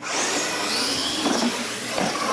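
Electric radio-controlled monster trucks racing on a concrete floor: motors and gears whining, rising and falling in pitch as they accelerate. It starts suddenly.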